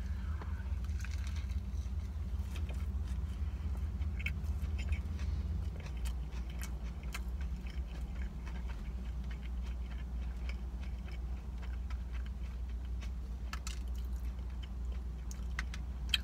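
A person biting into a fried chicken sandwich with lettuce and chewing it with faint, scattered crunches and clicks, over a steady low hum.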